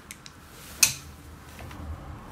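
A few faint ticks, then one sharp click a little under a second in, from makeup brushes being handled.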